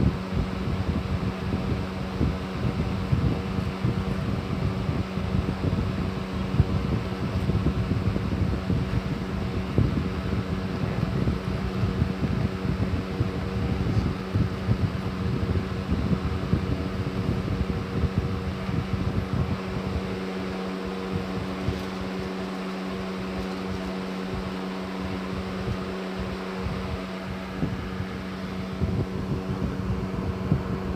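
Steady motor-like hum with a constant low tone and overtones, under low rumbling noise that thins out about two-thirds of the way through and returns near the end.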